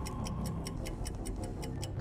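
Game-show countdown timer sound effect: a rapid, even clock ticking of about four or five ticks a second while the answer clock runs down, over a steady music bed.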